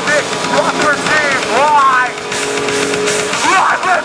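Live heavy metal band playing loud: distorted electric guitars and drums, with a vocalist screaming into the microphone and pitches sliding up and down over the top.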